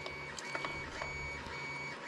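Faint handling of a document camera's jointed metal arm, with a few soft clicks about half a second in, over a steady low background hum with faint high whine.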